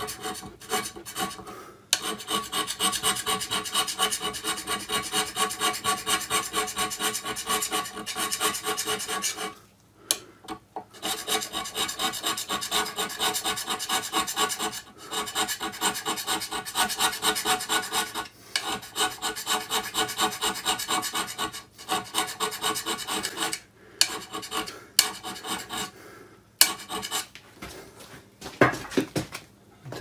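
Steel hand scraper pushed in short, rapid strokes across the top of a cast-iron lathe bed, rasping metal on metal. This is area scraping to flatten a slight dip in the middle of the bed. The strokes stop briefly about a third of the way in and twice more near the end.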